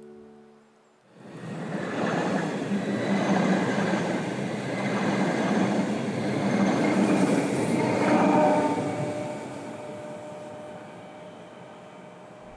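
Red Rhaetian Railway passenger train passing close by: steady running and wheel-on-rail noise that starts suddenly about a second in, stays loud while the cars go past, then fades as the train draws away.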